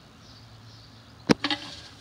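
A single sharp knock from handling a rusty steel gas mask canister and its hinged lid, about a second in, followed by a couple of small clicks, over a faint steady background hiss.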